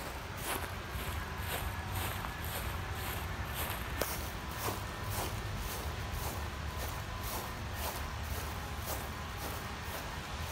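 Footsteps of a person walking across a grass lawn, about two steps a second, over a steady low rumble.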